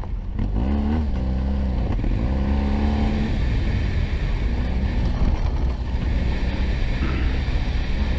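Police motorcycle's engine accelerating hard, its pitch climbing twice in the first three seconds as it revs through the gears, then running steadier, over a heavy low rumble of wind on the rider's camera.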